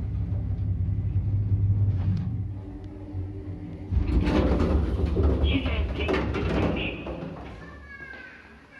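Old Soviet MLZ passenger lift running: a steady low hum of the cab travelling that dies away about two and a half seconds in, then from about four seconds a loud rattling, clanking stretch with short high squeaks that fades near the end.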